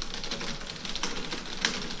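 Fast typing on a computer keyboard: a quick, uneven run of key clicks, with one sharper click near the end.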